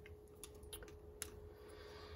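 Faint, sparse clicks and taps of needle-nose pliers being handled and worked against a motorcycle carburetor's hose fitting, over a faint steady hum.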